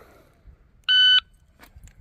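Shot timer start beep: one short, steady electronic tone about a second in, the signal for the shooter to draw and fire.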